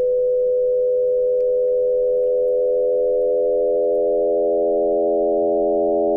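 Absynth 5 synthesizer holding a steady 500 Hz sine tone frequency-modulated by an 86.9 Hz sine, with the FM index turned slowly up. More and more inharmonic sidebands fill in above and below the tone, giving a sustained, weird-sounding, unsettled drone rather than a musical note.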